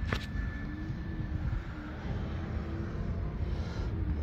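Low, steady outdoor rumble of vehicles with a faint engine hum through the middle, and a single sharp click just after the start.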